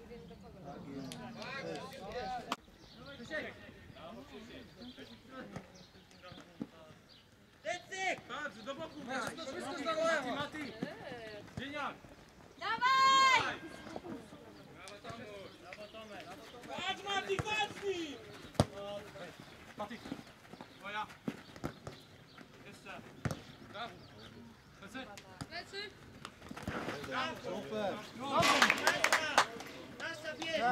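Players shouting to one another across an outdoor football pitch, with one long high-pitched yell about 13 seconds in and a burst of louder shouting near the end. A few sharp thuds of a football being kicked stand out between the calls.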